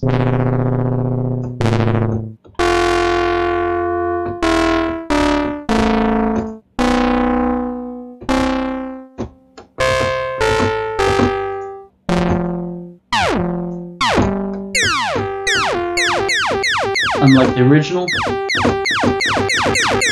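Arturia CZ V, a software emulation of the Casio CZ phase-distortion synth, playing a series of single notes with its ring modulator on, giving bright, clangorous tones that each ring and die away. In the second half the notes come quicker and short and slide in pitch as a pitch envelope is applied.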